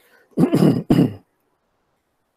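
A man clearing his throat close to the microphone, one loud rasp with a short break and a second push, about half a second in.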